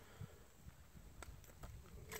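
Near silence, with a few faint clicks from a pistol being handled and pushed back into its holster.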